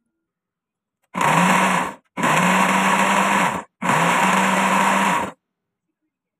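Electric blender motor running in three pulses, with a short gap between each. The motor's pitch rises as each pulse starts. It is whizzing flour, spices and chillies into a batter.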